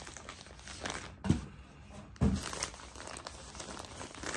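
Plastic shipping mailer crinkling and rustling as it is handled and searched, with two dull thumps about a second apart, the first the louder.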